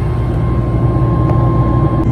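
Airliner cabin noise in flight: the steady rumble of engines and airflow heard from inside the cabin, with a thin steady whine over it.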